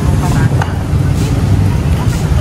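Busy street ambience: a loud, steady low rumble from traffic and outdoor noise, with faint snatches of passers-by's voices.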